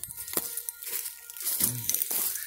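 Crackling and rustling of dry leaves, twigs and undergrowth as someone walks through brush on the forest floor, a quick run of small irregular ticks and snaps. A short low vocal sound comes near the end.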